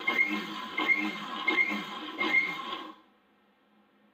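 Electric mixer grinder running, grinding black sesame seeds, with four regular surges about 0.7 s apart, then switched off about three seconds in.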